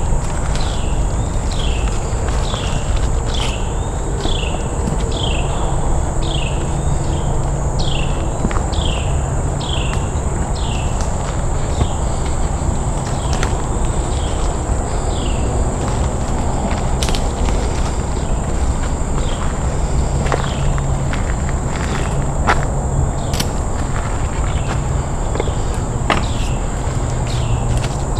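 Footsteps and movement through the forest floor, with low rumbling handling noise. Behind them run a steady high insect drone and a string of short falling chirps, about two a second for the first ten seconds or so, then only now and then.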